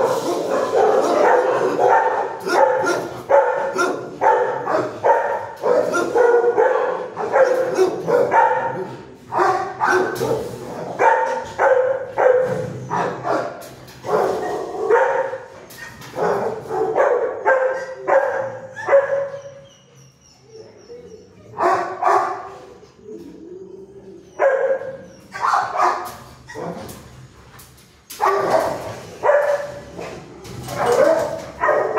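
Shelter dogs barking in rapid repeated barks, about two a second, easing off briefly a little past the middle and picking up again near the end.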